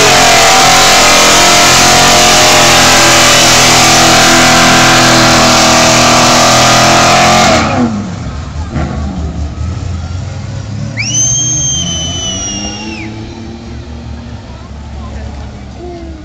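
A drift car's engine held at high, steady revs, very loud and distorted, for about seven and a half seconds, then dropping away suddenly to a lower vehicle rumble. Past the middle, a high, steady whistle-like tone sounds for about two seconds.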